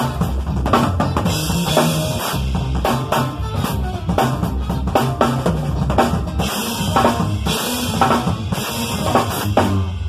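Acoustic drum kit played fast and busily, with snare, bass drum and several stretches of crash-cymbal wash, over music that has a stepping bass line underneath.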